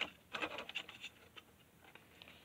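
Light clicks and scratching from handling a small piece of bamboo in the slot of a cordless saw's plastic battery connector, mostly in the first second, fading after.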